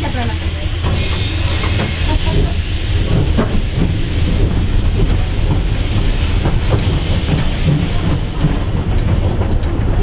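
Steam locomotive SJ E 979 heard from inside its cab as it moves slowly: a steady low rumble under a hiss of steam, with irregular clanks and knocks from about two seconds in.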